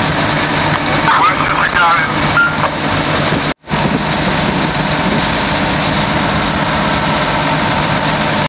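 Steady drone of idling heavy truck engines, typical of fire apparatus running at a fire scene, with brief distant voices in the first couple of seconds. The sound cuts out suddenly for a moment about three and a half seconds in, then carries on unchanged.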